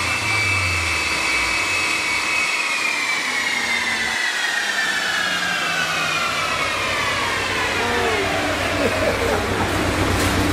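Subaru Legacy GT coasting down on a chassis dyno after a pull: a high whine from the spinning wheels, drivetrain and dyno rollers holds for a couple of seconds, then falls slowly in pitch as everything slows.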